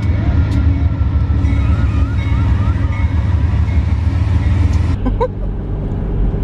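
Diesel locomotives of a passing freight train, a loud steady low rumble. About five seconds in it cuts to the lower road noise heard inside a moving car.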